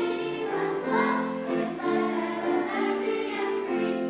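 Children's choir singing, holding each note about half a second to a second as the melody steps from note to note.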